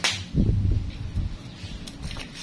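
A sharp snap of a nail nipper cutting through toenail, followed by about a second of low thumps and bumps close to the microphone.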